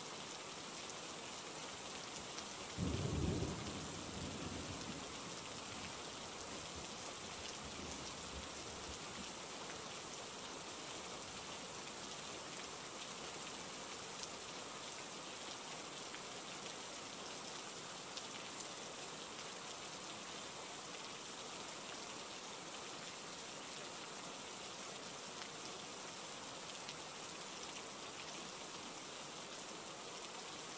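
Steady rain falling, with a low rumble of thunder about three seconds in that dies away over the next several seconds.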